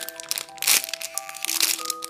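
Clear plastic bag crinkling and crackling in irregular bursts as a squishy toy inside it is handled, the loudest burst under a second in, over background music of soft held notes.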